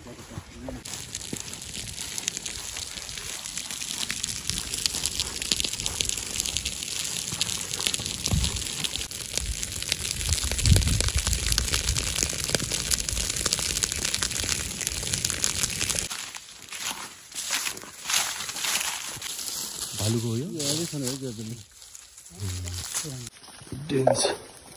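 Dry grass burning in a grassland fire, a dense steady crackle that stops abruptly about two-thirds of the way through; a voice follows.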